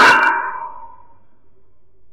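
A man's preaching voice ends a phrase, its echo dying away over about a second, then a pause with only a faint low hum.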